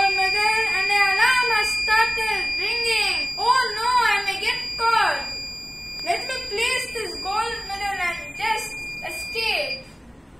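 An alarm buzzer sounding one steady high-pitched tone, triggered because the AI vision camera sees the gold medal gone from its place. The tone cuts off at the very end, as the medal is put back. A high-pitched voice calls out over it.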